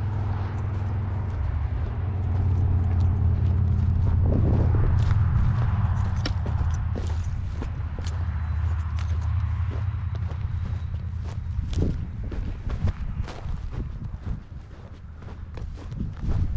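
Footsteps crunching on dry grass and stony ground while walking uphill, as a run of short, uneven strikes that come more often in the second half. Under them runs a low steady rumble, heaviest in the first half.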